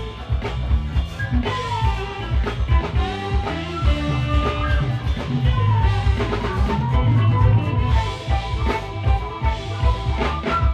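Live jazz band playing: a flute carries the melody over a steady drum-kit beat, bass and keyboards.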